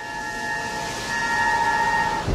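A rising whoosh with a steady held tone over hiss, a video transition sound effect. It swells over the first second, then holds.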